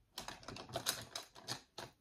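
Quick, irregular light clicks and clatter of makeup brushes being handled and picked up from a cluttered vanity table.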